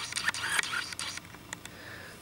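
Handling noise: short scraping rustles and small clicks during the first second or so, then quieter.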